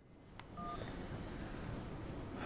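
A click, then a brief electronic beep from a smartphone as a call is hung up, followed by a low steady hiss.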